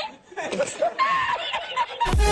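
A man laughing in short, broken bursts of giggling chuckles.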